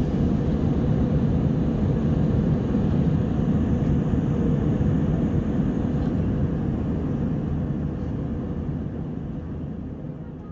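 Steady drone of a jet airliner's cabin noise in cruise, engine and airflow heard from inside the cabin, fading slowly over the last few seconds.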